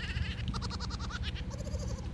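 A woman giggling: a quick string of short, high laughs, about ten a second, stopping briefly just before the end.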